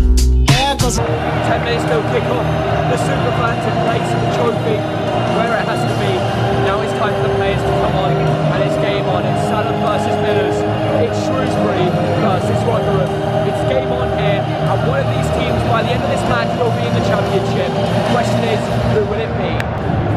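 Large football crowd singing together, many voices at once with some long held notes.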